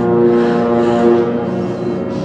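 Horror film score: low droning tones, several held together, slightly swelling about a second in.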